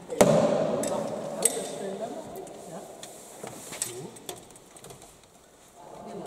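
Sharp clanks and knocks of folding e-bikes' metal frames being lifted and stowed in the back of a van, about five in all, the loudest just after the start, with indistinct voices murmuring. The sounds echo in an underground car park, and it grows quiet toward the end.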